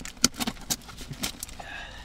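Sharp, irregular clicks and rattles from a cardboard package being handled and opened by hand, about five in two seconds.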